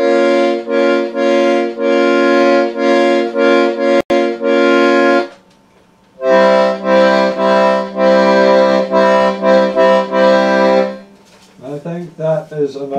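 Hohner Carmen II piano accordion playing two phrases of repeated, pulsed chords, each about five seconds long, with a pause of about a second between them. There is a brief dropout with a click about four seconds in.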